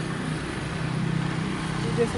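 A motor vehicle engine running with a steady low hum, over general outdoor background noise.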